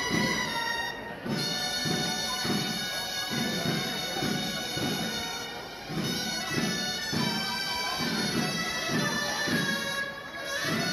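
Traditional double-reed shawms playing a tune over a drum beating about twice a second: the music that accompanies the building of human towers.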